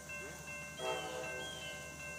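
Railroad grade-crossing warning bell ringing steadily as the signals are activated for an approaching train, with a brief faint horn note about a second in.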